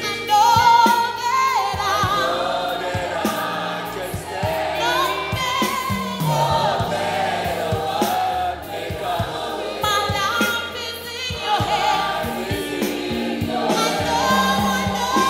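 Worship team and congregation singing a gospel song together as a choir, over instrumental backing with a steady beat.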